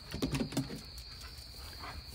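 A faint, steady, high-pitched cricket trill, with a few soft clicks in the first half second.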